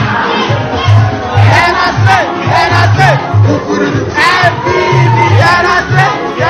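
A crowd of students shouting and cheering excitedly all at once, over music with a steady, pulsing low beat.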